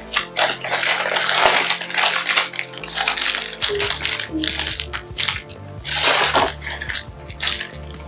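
Cardboard Lego box being opened and plastic bags of Lego bricks handled, with irregular crinkling and the rattle of loose bricks, over background music.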